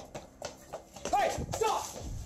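Quick footsteps of someone running on a concrete path, sharp separate footfalls, with two short vocal cries in the second half.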